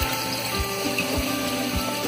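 Water splashing and trickling into a reef aquarium's sump where it drains through a filter sock, over background music with a steady low beat a little under twice a second.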